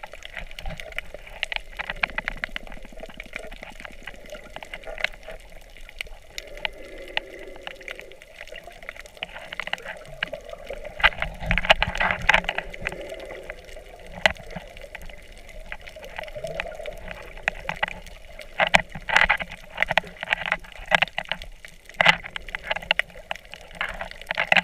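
Sound of the water heard by a camera held underwater on a coral reef: a muffled steady wash with bubbling and many scattered sharp clicks, and denser clusters of louder bursts about halfway through and again near the end.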